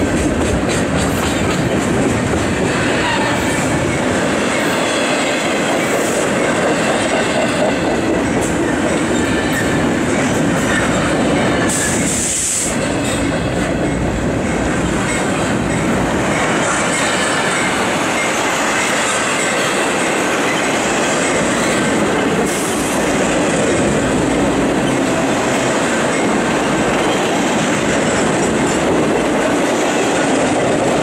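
Double-stack intermodal freight train rolling past close by: a steady rumble and rattle of the well cars on the rails, with clicks of wheels over the joints and a brief high squeal about twelve seconds in.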